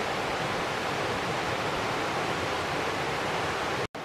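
Mountain stream rushing over rocks in a beech wood: a steady, even sound of running water that cuts off abruptly near the end.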